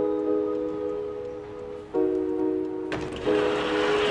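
Background score of sustained, held chords that change about every two seconds. Near the end a swell of rushing noise rises over them.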